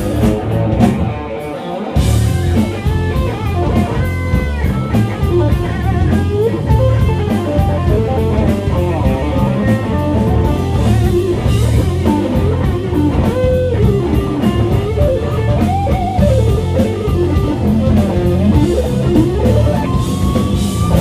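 Live rock band with distorted electric guitars, bass and a drum kit playing loudly. The band drops back for about a second near the start, then comes back in at full strength, with bending guitar notes over steady cymbal strokes.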